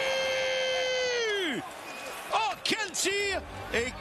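A French-language hockey commentator's drawn-out shouted goal call: one high note held for about a second and a half, then falling away. A few words of excited commentary follow.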